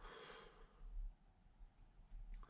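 A man breathing out a long, breathy exhale of vapour after a draw on an e-cigarette, over in under a second. A soft low bump follows about a second in.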